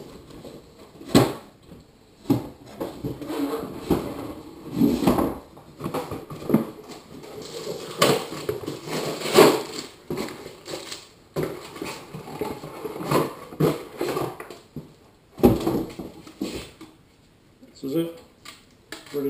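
A cardboard box and the hard plastic parts of a paint spray gun being handled and unpacked: scattered knocks and clicks with rustling between them.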